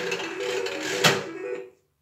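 Three-reel slot machine playing its electronic reel-spin tune, a run of plain tones stepping in pitch, with a clunk about a second in as the reels stop. The tune cuts off suddenly just before the end.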